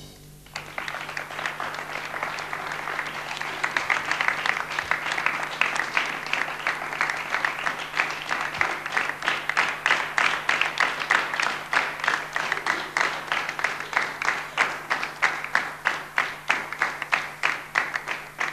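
Studio audience applauding, building up and then turning into rhythmic clapping in unison at about three claps a second.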